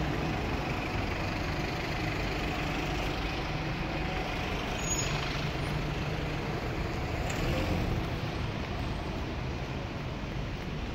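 Steady road traffic on a city street, with the low running of a large vehicle's engine passing close by.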